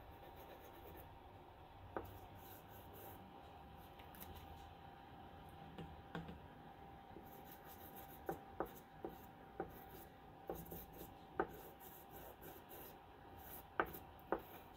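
Stick of wet blue chalk rubbing on thin printer paper: faint, soft scratching, with short light taps of the chalk on the paper, more of them in the second half.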